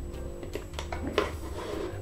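Soft background music with steady held tones, and a few faint crackles of a clear plastic bottle being handled.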